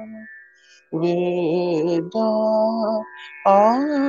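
A man singing in the dhrupad style of Hindustani classical music, holding long vowel notes of about a second each with no words. After a short pause he sings three sustained notes, the last sliding up into its pitch.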